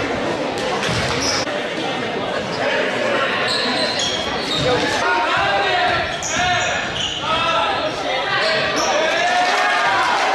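A basketball bouncing on a gym's hardwood court during play, with voices shouting over it, from about halfway on, echoing in a large hall.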